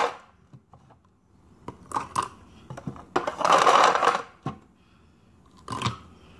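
Ice cubes spooned into a drinking bottle, clicking against the spoon and the bottle: a few sharp clinks, then a longer rattle of cubes tumbling in about three seconds in, and another clink near the end.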